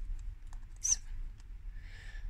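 A tarot card being drawn from the deck and laid down on a soft cloth: a brief faint rustle about a second in, over a low steady hum.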